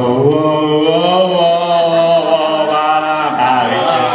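A voice drawing out one long, wavering vocal note on stage, its pitch sliding slowly up and then down.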